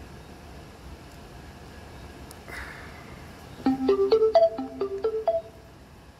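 Steponic Macaron S1 Bluetooth speaker sounding its electronic start-up jingle as it is switched on: a rising four-note chime played twice, after a soft brief rustle.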